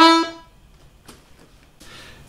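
Piano accordion's right-hand reeds sounding a held E, the last note of a short grace-note figure, released about half a second in; then only faint room tone.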